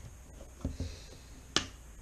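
Plastic drink cup and straw being handled, giving a few soft clicks followed by one sharp click at about a second and a half.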